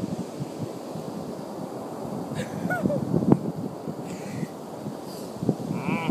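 Wind rumbling on the phone's microphone with surf behind it. A couple of short pitched calls come about three seconds in.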